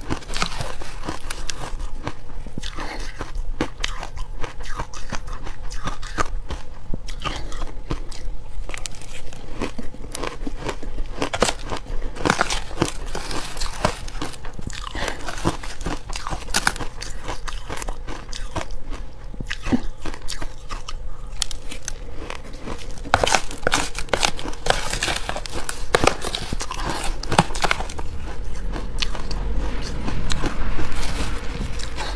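Close-up crunching of crumbly frozen ice, bitten and chewed, mixed with a metal spoon scraping and scooping the ice in a plastic tub. The crackles come thick and irregular throughout.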